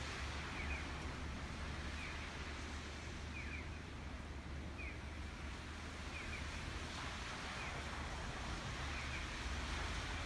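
Outdoor ambience of a snowy street: a steady hiss over a low rumble, with faint short high chirps repeating evenly about every second and a half.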